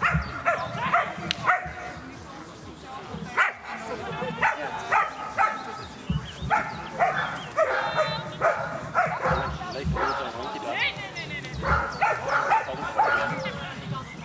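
A dog barking over and over, in short irregular bursts while it runs an agility course, with a person's voice calling out in between.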